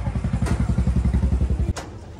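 A vehicle engine running, heard as a loud, rapid, even low throb that cuts off suddenly with a click near the end.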